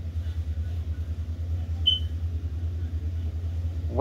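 A steady low hum in the background, with one brief high chirp about two seconds in.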